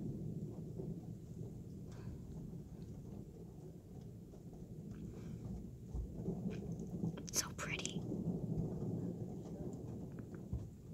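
Thunder rumbling low and steady, swelling about six seconds in. A brief burst of close, sharp sounds near the phone comes partway through the swell.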